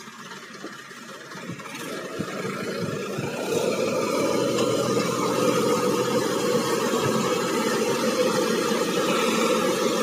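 Tractor's diesel engine speeding up and growing louder over the first few seconds, then running steadily under load as it drives the hydraulic pump that tips the loaded trailer's bed.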